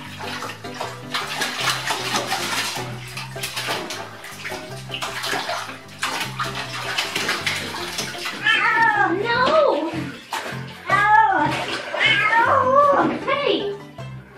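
Water sloshing and splashing in a filled bathtub as a cat wades through it, for about the first eight seconds. Then a cat meows again and again, a string of drawn-out meows that rise and fall in pitch.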